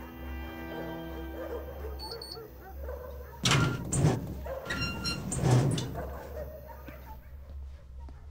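Bowed string music, then from about three and a half seconds in, several loud thuds at a glass shop door, with a ringing tone among them.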